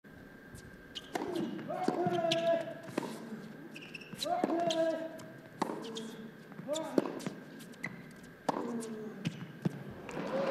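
Tennis rally: sharp racket strikes on the ball about every second or so, starting with the serve. Most strikes are followed at once by a player's short grunt.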